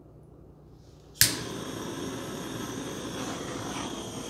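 Handheld butane torch lit with a sharp click about a second in, then a steady hissing flame, used to pop air bubbles in wet acrylic pouring paint.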